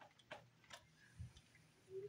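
Near silence: room tone with a few faint ticks about half a second apart.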